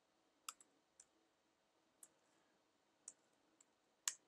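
A few faint, sparse computer keyboard keystrokes, about five separate clicks spread over a few seconds, as code is typed.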